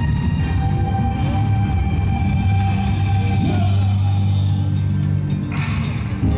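Yosakoi dance music played over a parade sound truck's loudspeakers, with a deep bass note held through the middle and a short noisy burst near the end.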